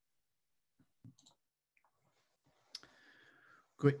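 Near silence on a video-call line, broken by a few faint clicks about a second in and a sharper click about three seconds in, followed by a faint hiss. A man's voice says "Great" at the very end.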